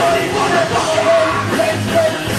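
Live rap-rock performance: a full band with a drum kit and crashing cymbals playing loudly while a rapper shouts into a microphone.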